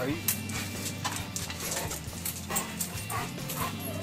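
A dog whimpering and giving short yips, heard faintly among scattered clicks and knocks.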